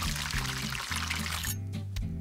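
Chip-crumbed chicken deep-frying in a pot of hot oil, with a steady sizzle that cuts off suddenly about one and a half seconds in. Background music with a low bass line runs underneath.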